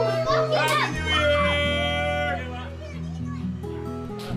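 A party crowd of adults and children shouting and calling out over background music with a steady bass line. The voices thin out after about two seconds.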